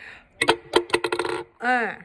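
Small hard objects clicking and rattling against each other inside a clear plastic bottle as it is handled, followed near the end by a short vocal 'ooh' that rises and falls in pitch.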